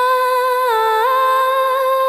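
A female vocal track played back from the song's mix, holding one long high sung note with small stepped pitch ornaments.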